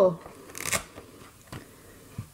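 Brief rustle of a paper number card being handled, about half a second in, followed by a couple of faint taps. A spoken word trails off just as it begins.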